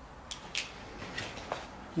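A few faint, short clicks and taps from hands handling a folded wooden spinning wheel. Two sharper ones come close together within the first second, and fainter ones follow later.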